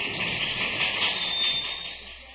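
A cymbal rings out after the final chord of a jazz band recording, a hissy wash that begins to fade near the end.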